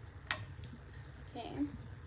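Quiet pause with two faint clicks, then a brief soft vocal sound; the trombone is not sounding.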